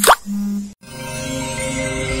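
Logo-sting sound effect: a quick falling swoosh over a low held tone, a moment's silence, then outro music with sustained synth tones.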